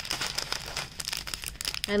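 Clear plastic bags of diamond painting drills crinkling as they are handled, with many small irregular crackles.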